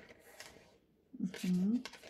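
Speech only: a woman says a short, quiet "Ok" about a second in, with faint room noise before it.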